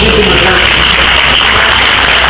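Audience applauding: a dense, steady patter of clapping.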